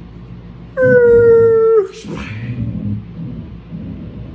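A dog's short, high whine or howl: one held note about a second long that drops in pitch at the end, followed by a brief rustle.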